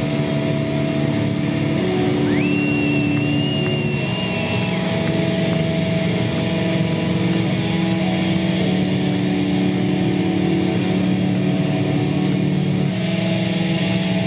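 Live heavily distorted electric guitar holding a loud, sustained droning chord with no beat. About two seconds in, a high whine slides up and holds for a couple of seconds before fading.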